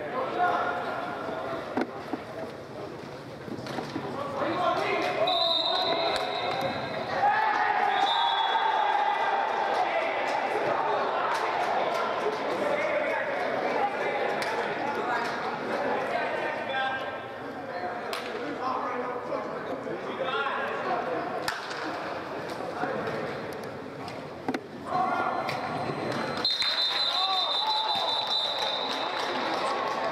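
Indistinct voices of players and coaches echoing in a large indoor sports hall, with scattered ball and footstep thuds. A referee's whistle sounds briefly twice in the first ten seconds and for about two seconds near the end.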